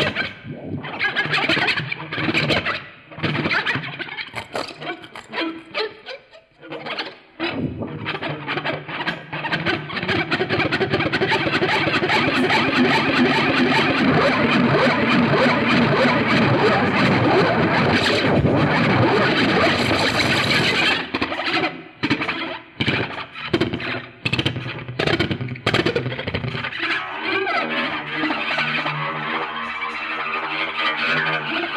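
Electric guitar played through distortion and effects pedals in free improvisation. Choppy, stuttering bursts for the first several seconds give way to a dense, sustained distorted wash, which cuts off suddenly about two-thirds of the way in. More chopped bursts follow, then held notes near the end.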